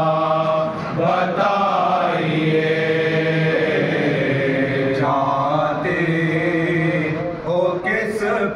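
Men's voices chanting a noha, a Shia mourning lament, together in unison, a lead reciter at a microphone with the group joining him. The lines are sung in long, drawn-out held notes, with short breaks between phrases.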